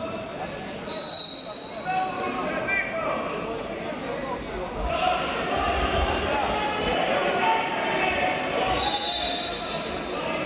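Echoing sports-hall ambience during a wrestling bout: many voices and shouts from around the mats. A high, steady whistle blast comes about a second in and again near the end.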